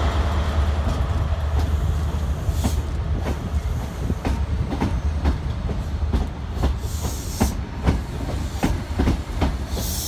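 High-speed passenger train passing: a steady low rumble with wheels clicking sharply over rail joints several times a second. The rumble eases slightly as the clicks grow more distinct.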